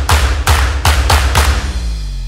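Logo sting of an animated intro: a rapid run of about five heavy hits with deep bass, stopping about three-quarters of the way through and leaving a low ringing tail that fades.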